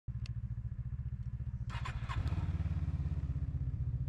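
Snowmobile engine running under way, its note stepping up in pitch and loudness a little after two seconds in as the throttle opens. A few short sharp clatters come just before the rise.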